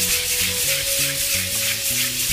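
Sandpaper on a round hand-held pad rubbed quickly back and forth over a raised plaster wall texture, knocking the tops of the pattern level. Background music with low notes plays along.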